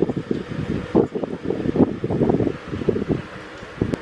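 Air buffeting the microphone in uneven gusts, a low rumbling that rises and falls. A single sharp click comes near the end.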